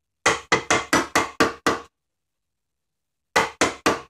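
Mallet striking a wood chisel to square the corners of a recess in cherry: a quick run of seven sharp taps, about four a second, then a pause and three more taps near the end.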